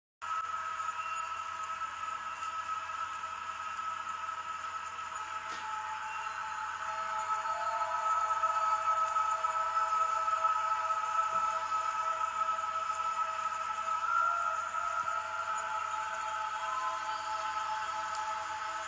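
Soft background music of sustained, slowly shifting held tones with no beat.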